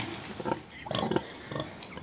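Pigs grunting: a few short, low grunts.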